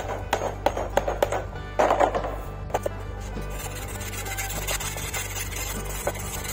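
Hammer chipping welding slag off a weld on mild steel tube: a quick series of sharp strikes, about three a second, that stop about halfway through. Background music plays throughout.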